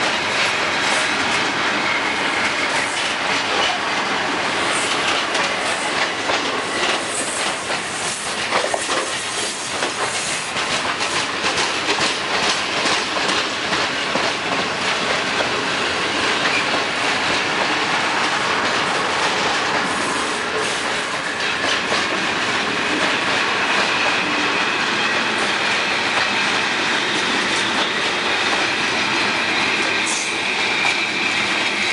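Gravel-laden freight train of open-top gondola wagons rolling past close by: steady heavy rumble and clatter of wheels over the rail joints. A thin high wheel squeal comes and goes, near the start and again in the last third.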